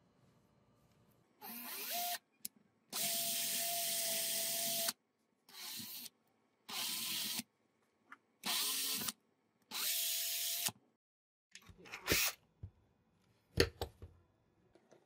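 Cordless drill spinning a small brass lighter part in six short runs of one to two seconds each while an abrasive strip is held against it, the sanding hiss heard over the motor. A few sharp clicks near the end.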